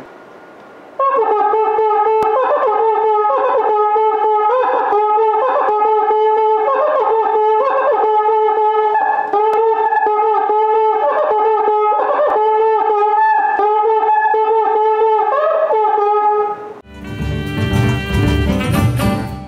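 A cuíca, the Brazilian friction drum with a metal body and leather head, played by rubbing the stick inside with a wet cloth. It gives a rhythmic pattern of short pitched notes, mostly on one low note with quick slides up to higher ones, starting about a second in. Near the end, a burst of music cuts in.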